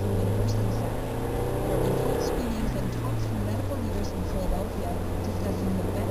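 Steady low drone of a car's engine and tyres, heard from inside the cabin while driving at road speed.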